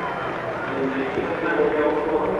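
A man speaking over a steady background din of crowd noise.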